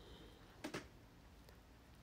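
Near silence: faint room tone, with two faint clicks close together a little over half a second in.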